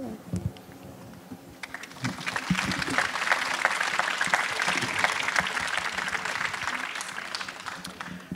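Audience applauding. It builds up about two seconds in, holds steady, and dies away just before the end.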